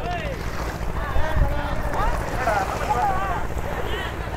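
Wind buffeting the microphone with a low rumble, while men's voices call out in the distance.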